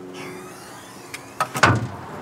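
The tilt-up seat section of a Bobcat skid steer being swung down: faint metal creaking and a small click as it moves, then a loud clunk about one and a half seconds in as it comes down into place.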